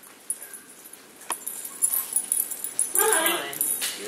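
Metal dog tags jingling as a dog moves about on its lead, with a sharp click just after a second in. A brief vocal sound comes about three seconds in.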